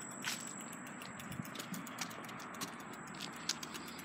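Faint, irregular light taps and clicks over a low, steady background hiss.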